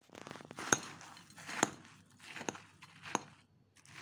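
Metal spoon stirring a thick mix of cream, crumbled biscuits and chopped nuts in a ceramic bowl: soft scraping, with four sharp clinks of the spoon against the bowl about a second apart.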